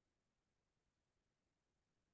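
Near silence: the recording is silent, with no sound above a faint noise floor.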